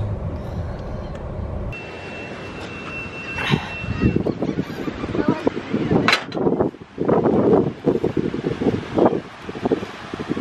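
Car road noise for the first couple of seconds. After a cut, wind on the microphone and irregular footsteps on a sandy path.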